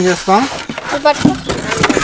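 Voices talking, with short rustles and crinkles of the plastic wrap around a boxed subwoofer as hands handle it in its cardboard box.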